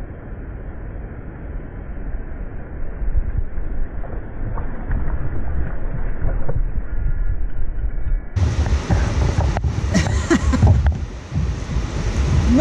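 Muffled wind rumble on the microphone with river water noise around the kayak while a hooked bass is fought at the boat. About eight seconds in, the sound turns suddenly clearer and louder, with a few sharp handling knocks.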